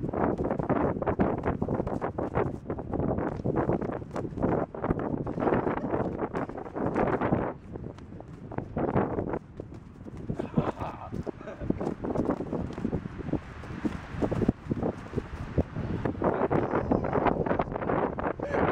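Paint-smeared boxing gloves repeatedly smacking bare skin, with irregular thuds and feet shuffling on dry grass, and voices grunting and laughing.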